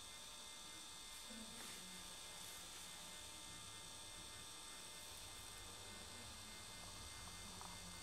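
Very quiet room tone: a steady electrical hum with faint hiss.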